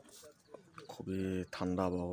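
A man's voice: after a quiet start, two drawn-out voiced sounds at a steady pitch begin about a second in, like a held vowel or hum rather than clear words.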